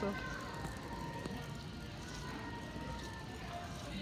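Background music from store speakers, faint and steady, over the hum of a large shop floor.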